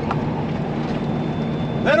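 Steady low drone of a Peterbilt 389 semi truck's diesel engine and road noise, heard from inside the cab while driving.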